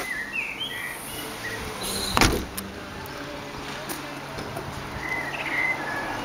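The tailgate of a Vauxhall Insignia hatchback being shut: a single loud thump about two seconds in. Short high bird chirps are heard near the start and again near the end.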